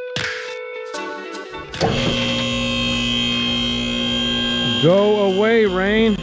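A steady electric hum sets in about two seconds in, and a man's voice rises and falls over it near the end.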